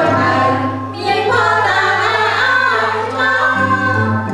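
A small mixed choir of men's and women's voices singing a Khmer hymn together, with a brief dip in level about a second in.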